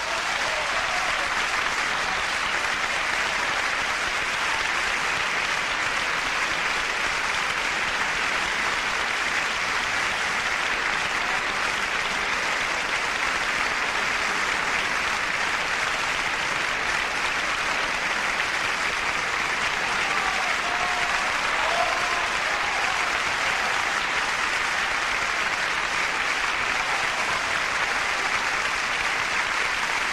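A theatre audience applauding steadily after the end of an opera duet.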